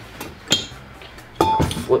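Metal parts of a BMW E36 differential clinking as they are handled: one sharp clink about half a second in, then a louder clatter of knocks with a short metallic ring near the end.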